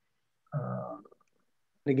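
Silence broken about half a second in by a brief, pitched vocal sound from a man, like a short hum or 'uh', lasting about half a second; a man starts speaking near the end.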